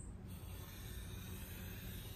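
Faint, steady scratch of an X-Acto knife blade drawn lightly along a steel ruler, scoring cardstock without cutting through.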